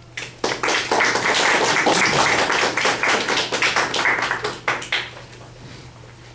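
Applause: a group of people clapping. It starts about half a second in and dies away about five seconds in.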